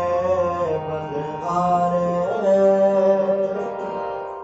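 Harmonium playing a kirtan melody in held notes that change every second or so, with tabla accompaniment.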